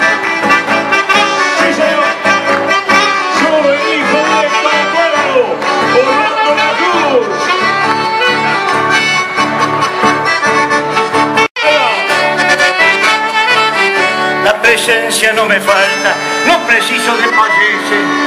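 Live band music led by accordion, playing without pause except for a split-second dropout a little past the middle.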